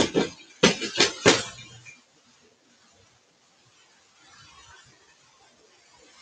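About six quick, hard clicks and taps from a rubber line stamp and its ink pad being handled and pressed, bunched in the first second and a half, then near-quiet room tone with a faint rustle.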